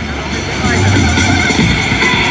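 Renault 155.54 tractor's diesel engine running hard under full load, pulling a weight-transfer sled, getting steadily louder.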